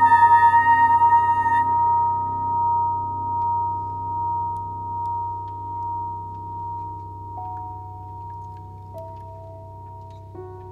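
Contemporary chamber music. A soprano's held high note ends about one and a half seconds in, leaving soft sustained tones from metal percussion that pulse slowly and fade away. A few new quiet notes come in near the end.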